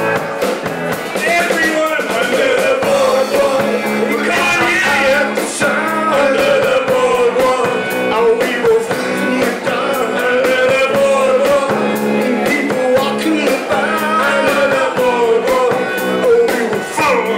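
Live rock band playing with drum kit and electric guitars, a wavering lead line over a steady beat.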